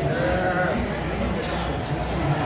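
A person's wavering, drawn-out vocal sound in the first second, over other people talking.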